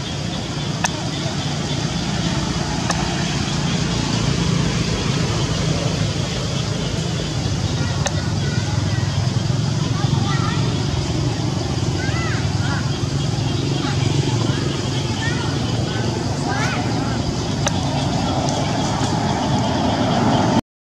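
Steady outdoor background rumble like vehicle traffic, with indistinct voices and a few faint short chirps in the second half.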